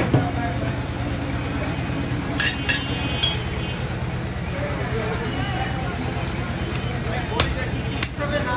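Butcher's cleaver chopping goat meat on a wooden stump block, a few separate strikes, with a pair of ringing metal clinks about two and a half seconds in. A steady low hum of traffic and background voices runs underneath.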